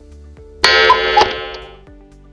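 A bright ringing sound effect for a pop-up subscribe button starts sharply just over half a second in, with two quick clicks in it, and fades out over about a second. Soft background music runs underneath.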